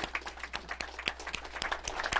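Audience applauding: many overlapping hand claps.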